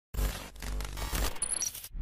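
Logo intro sound effects: a sudden hit with deep bass, then a crackling, scraping texture with three short, high metallic pings about three-quarters of the way through. It cuts off suddenly just before a music sting begins.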